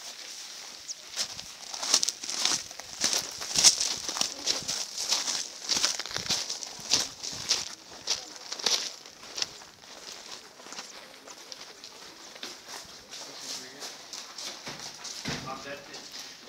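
Footsteps crunching on gravel and dry ground as people walk, about two steps a second, growing fainter after about nine seconds.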